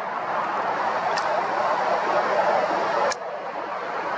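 Road vehicle going by, its tyre and engine noise swelling and then cutting off suddenly about three seconds in.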